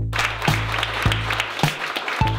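A small group applauding over background music with a steady beat.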